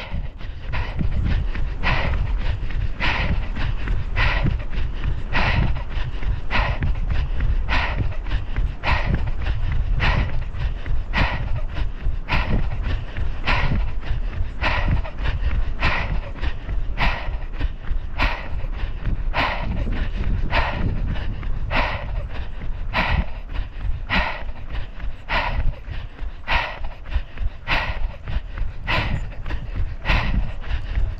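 A person running, with a steady rhythm of short strokes about three every two seconds, over a constant low rumble.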